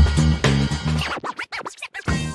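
Podcast ident jingle: a funky bass-and-drum groove that breaks off about a second in into a run of DJ turntable scratches.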